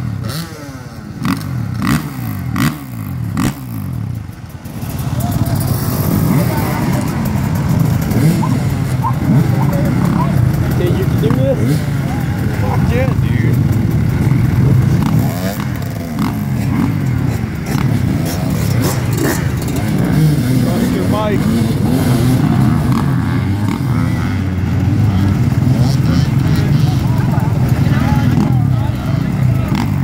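A row of dirt bike engines running together at a race start line, several riders blipping their throttles in the first few seconds, then many engines idling and revving at once in a dense, continuous drone.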